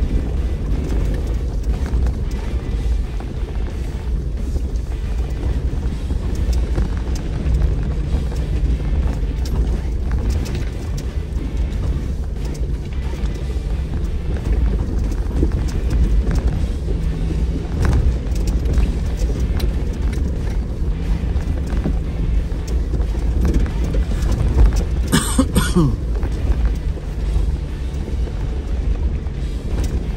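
Four-wheel-drive vehicle heard from inside, crawling slowly over a rough rocky trail: a steady low engine drone and rumble, with scattered knocks from rocks under the tyres. A short rising squeak about five seconds before the end.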